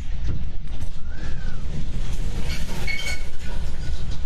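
Loud, steady low rumble of tornado wind, with scattered clicks and knocks over it.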